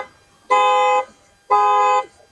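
Electronic beeper sounding evenly spaced beeps of one steady pitch, each about half a second long, about once a second.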